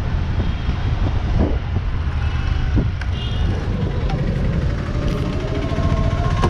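Street traffic noise with a heavy, steady wind rumble on the microphone, as when riding through town. A faint rising engine tone comes in near the end.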